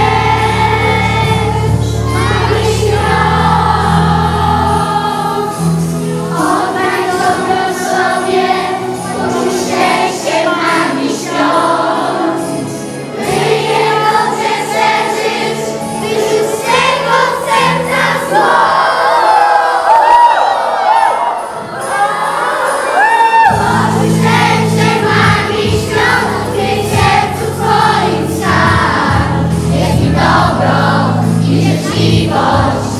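Children's choir singing a Christmas song over instrumental accompaniment; the bass drops out for a few seconds past the middle and then comes back.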